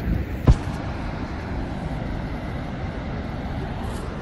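Steady rushing noise of Niagara Falls with wind on the microphone, and one sharp knock about half a second in.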